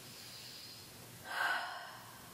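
A woman's single audible breath, short and breathy, about a second and a half in, over quiet room tone.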